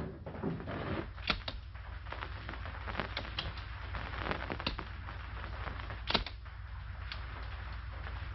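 Steady hiss and low hum of an old film soundtrack, with a few sharp clicks at irregular intervals.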